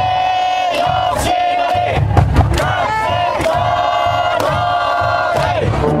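A high-school baseball cheering section chanting in unison in the stands, loud and steady in held phrases, with drum beats and the brass band mixed in.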